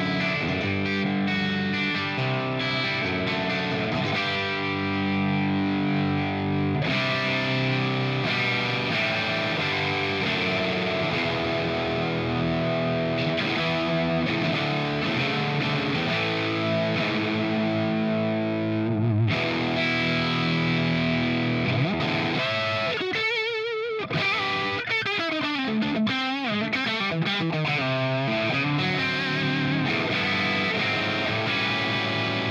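Electric guitar with PAF-style humbuckers played through an early-1970s Sound City 50R valve head (EL34 power valves, normal and bright channels cascaded, no reverb) into a 4x12 cab with 25-watt Greenback speakers: crunchy overdriven chords and riffs. Near the end come bent notes with a wavering vibrato.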